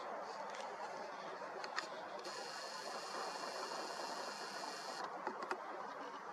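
Nikon Coolpix P1000's lens zoom motor running with a steady high-pitched whine for about three seconds, starting about two seconds in and stopping sharply, with a few faint clicks near the end, over a low background hiss.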